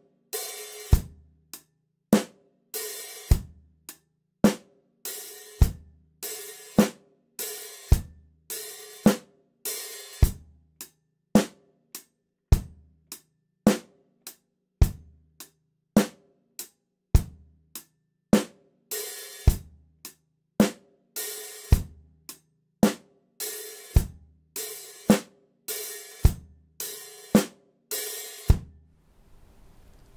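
Drum kit played slowly and steadily: an eighth-note closed hi-hat pattern with bass drum and snare, and open hi-hat notes that ring longer. In the later part, open and closed hi-hat alternate note by note. The playing stops shortly before the end.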